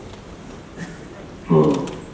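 A man's speech over a microphone pauses, with a few faint sharp clicks in the lull. About one and a half seconds in he starts speaking again, and his voice is the loudest sound.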